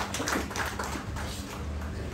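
A few light, irregular taps in the first half-second or so, over a low steady hum.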